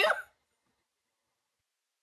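The end of a woman's shouted word, cut off abruptly a moment in, followed by complete silence.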